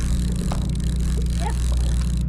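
Steady low engine hum of a sportfishing boat, with a constant hiss over it.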